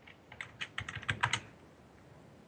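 Computer keyboard typing: a quick run of about a dozen keystrokes lasting just over a second.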